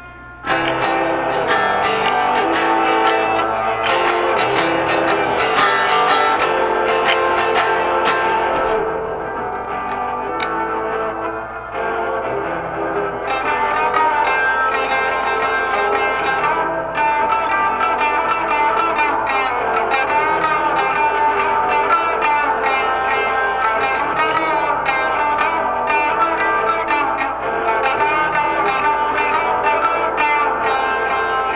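Electric guitar played solo, picked notes ringing over one another, starting about half a second in. The playing eases to a softer passage about a third of the way through, then picks up again.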